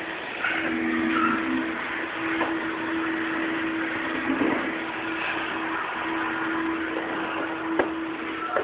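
Electric floor-cleaning machine running with a steady hum that drops out briefly a few times.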